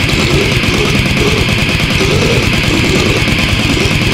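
Brutal death metal/goregrind recording: distorted electric guitar riffing over rapid, evenly spaced drumming, loud and dense throughout.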